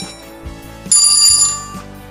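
Soft background music with light plucked notes. About a second in, a loud, bright bell ding rings for about half a second and fades.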